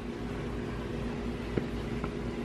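Steady low mechanical hum with a couple of even tones, with one faint click about one and a half seconds in.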